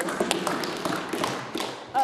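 Background noise in a parliamentary debating chamber: a scatter of light taps and clicks over a low murmur of voices.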